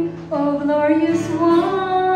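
A woman leading a slow worship song with children singing along, over strummed acoustic guitar. Notes are held long, with a short break between phrases just after the start.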